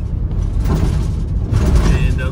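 Engine and road noise heard inside a van's cab while driving: a steady low rumble that swells briefly about halfway through and again near the end.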